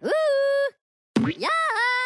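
A Minion's high-pitched cartoon voice giving two drawn-out cries, each swooping up in pitch and then held, with a short silence between them.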